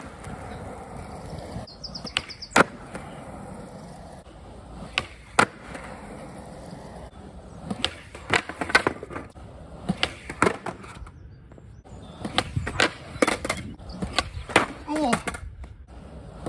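Skateboard wheels rolling on smooth concrete, broken by sharp tail pops and landing slaps as the board is jumped off a concrete box ledge, repeated over several attempts.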